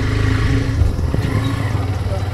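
Motorcycle engine running steadily at low road speed, a continuous low pulsing rumble.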